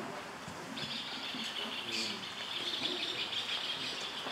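Birds chirping continuously, starting just under a second in.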